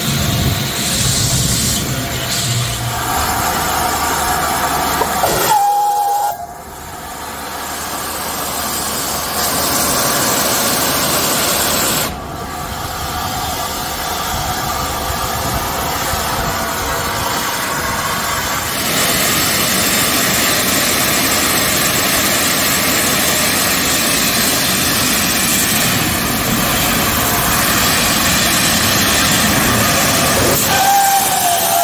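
LNER Peppercorn A2 Pacific steam locomotive 60532 'Blue Peter' blowing off steam around its cylinders, a loud, steady hiss that breaks off abruptly at about six and twelve seconds in. A brief whistle note sounds just before the first break.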